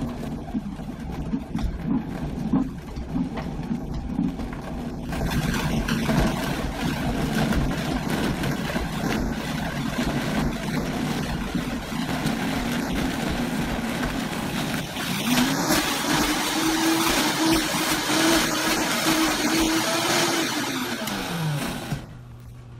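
Vitamix blender motor running, chopping fibrous pineapple rind, orange peel and vegetable scraps. It gets louder and brighter about five seconds in, rises to a steady higher pitch around fifteen seconds, and winds down with falling pitch just before the end.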